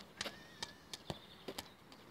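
Faint, sharp taps and knocks, about seven scattered through two seconds, with one deeper knock about a second in.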